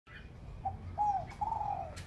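Spotted dove cooing: a short coo, then two longer coos that fall slightly in pitch, about a second in and near the end.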